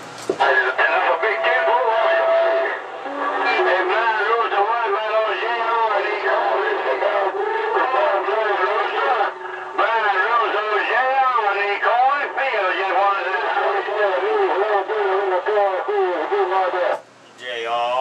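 Garbled, unintelligible voice of a distant station coming in on skip over a CB radio, with a brief steady tone near the start. The signal drops out about a second before the end.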